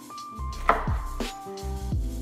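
A chef's knife cutting through a grilled crunchwrap on a wooden cutting board, with one crunch of the tostada shell inside breaking about a third of the way in. Electronic background music with a steady kick-drum beat plays throughout.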